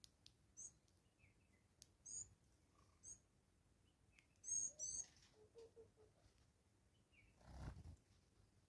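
Blue waxbill giving short, very high, thin calls, about five in all, the two loudest close together in the middle, over a few faint clicks. A brief low rumble comes near the end.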